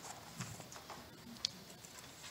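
Faint footsteps and small handling knocks at low level, with one sharper click about one and a half seconds in.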